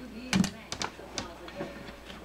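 A handful of sharp, separate clicks of metal staples being worked loose with a hand tool from the plastic base of a motorcycle seat, the loudest about a third of a second in.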